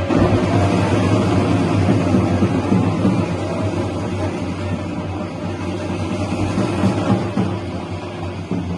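Loud music with a steady beat playing over the din of a packed, excited crowd.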